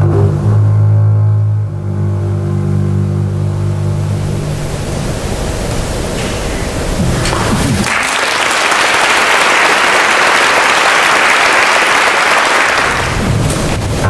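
A double bass bows a long, low sustained note that dies away. Then an audience applauds for about five seconds, and the bass starts bowing again near the end.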